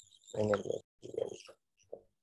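A low-pitched person's voice making two short, wordless or mumbled sounds, like a hum or a murmur, about half a second apart.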